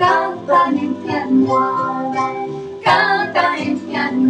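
A children's song: a woman and children singing along over plucked-string accompaniment.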